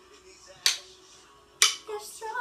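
Wooden drumsticks clacking twice, about a second apart, keeping time with the beat; a song plays faintly underneath.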